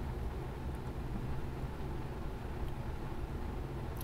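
Steady low hum with light background hiss, without clear clicks or handling sounds.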